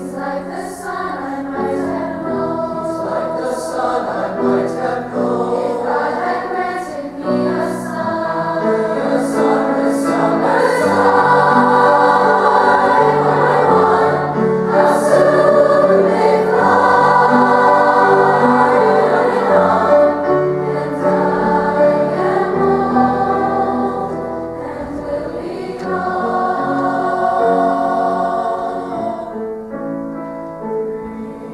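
Mixed youth choir singing with grand piano accompaniment. The singing swells to its loudest in the middle and eases a little before rising again near the end.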